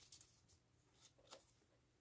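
Near silence, with a few faint soft clicks of a deck of playing cards being handled and cut.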